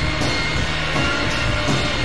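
Blues-rock band playing: electric guitar over a drum kit, with drum and cymbal strikes keeping a steady beat.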